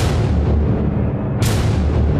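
Loud, deep rumbling boom with a single sharp hit about one and a half seconds in.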